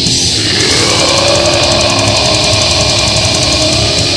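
Heavy metal music: loud, dense distorted electric guitars and drums, with a long held high tone that slides up early, holds, and falls away near the end.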